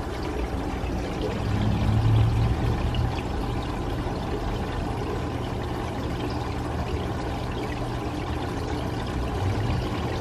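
Water running steadily in a goldfish tank, a continuous trickling, pouring sound, with a low rumble swelling about two seconds in.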